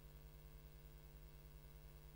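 Near silence with only a faint, steady electrical hum: the speaker's audio feed has cut out.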